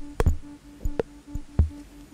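Ciat-Lonbarde Plumbutter drum-and-drama machine playing a patch. Sharp clicks and a few short low bass thumps sit over a pulsing tone at about four pulses a second. The rhythm is destabilised by extra pulses patched into its ultrasound section, giving a thick, electric sound.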